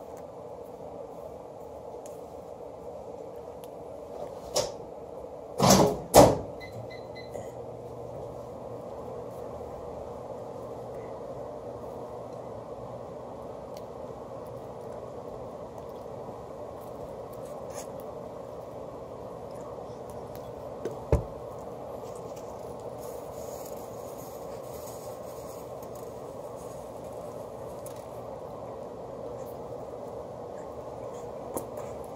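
Steady hum of room noise, broken by a few sharp knocks: one about four and a half seconds in, two loud ones close together around six seconds, and one more a little past twenty-one seconds.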